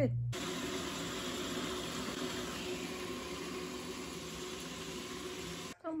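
A steady, even rushing noise with a faint hum in it, starting suddenly just after the start and cutting off just before the end.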